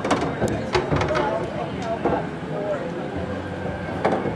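A cue tip strikes the cue ball, then pool balls click sharply against each other several times in the first two seconds, over a steady murmur of voices.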